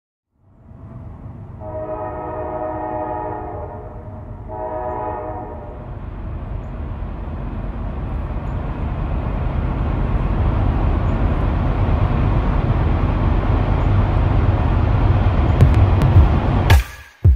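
Train passing: a horn sounds one long blast and then a short one, over a low rumble that grows steadily louder as the train approaches.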